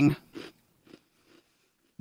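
Faint biting and chewing of a chocolate Oreo cookie, a few soft crunches in the first second and a half, then near silence.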